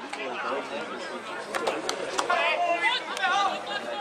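Voices on a football pitch calling and shouting to one another, several overlapping, with louder shouts from about halfway. A few sharp knocks sound among them.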